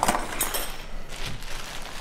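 A few short clinks and knocks of metal hand tools being handled, with a clear plastic bag rustling as the next tool, a heavy solid-metal spike, is pulled out.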